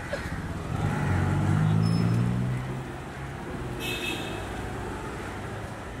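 A scooter's small engine running close by in street traffic, rising a little in pitch and loudest from about one to two and a half seconds in, then easing to a lower drone. A brief high-pitched tone sounds about four seconds in.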